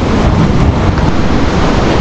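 Wind buffeting an outdoor microphone: a loud, steady rushing noise with a heavy low rumble.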